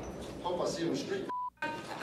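A man shouting a threat, with a short steady censor bleep over the swear word about one and a half seconds in, the sound cutting out completely for a moment in the middle of the bleep.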